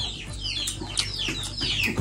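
Chicks peeping: a string of short, high chirps, each falling in pitch, about four or five a second.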